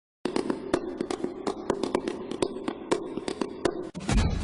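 Camera shutters clicking in quick, irregular succession, about four to five sharp clicks a second, like a pack of press photographers shooting at once, over a steady low hum. The clicking starts suddenly just after the beginning and stops just before the end.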